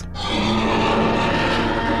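Sound-effect roar of a large dinosaur: one long, rough roar over a held music tone.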